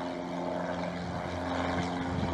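An aircraft's engines droning steadily over a rushing noise, heard on the soundtrack of an MPEG-1 video clip playing on a PC.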